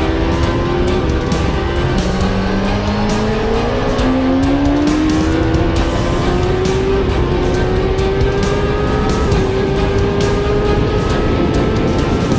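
Kawasaki Ninja ZX-10R inline-four sportbike engine heard from onboard at speed on a race track. Its pitch climbs, drops sharply about two seconds in, then climbs again more slowly with small drops along the way, the pattern of revving up through the gears. Background music plays underneath.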